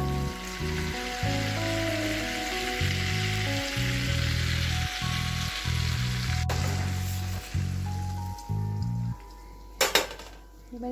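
Butter and oil sizzling as they melt and foam in a hot kadhai, over background music with a stepping bass line. The sizzle dies down after about six and a half seconds, the music stops a little after nine seconds, and a sharp click comes just before the end.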